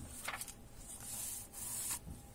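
A paper page of a hardcover book being turned by hand, rustling and sliding across the page beneath in several short swishes, the last of them ending right at the close.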